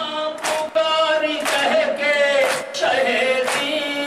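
A male reciter and mourners chanting an Urdu noha together, with a sharp, even beat about once a second from hand-on-chest matam.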